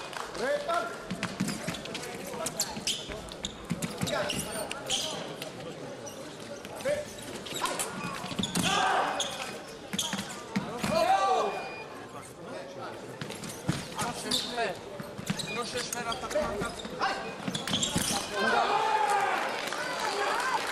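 Sabre bout in a large sports hall: voices and shouts echoing through the hall, with sharp clicks and knocks from fencers' footwork on the piste and blade contact throughout. Louder shouts come about eight, eleven and eighteen seconds in.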